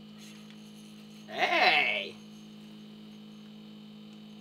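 A steady low electrical hum throughout, broken about a second and a half in by one short vocal sound, a brief exclamation lasting under a second.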